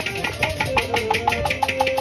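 Instrumental passage of Kashmiri folk music: a harmonium holds sustained notes that step in pitch, over a fast, even run of sharp strokes, about eight a second.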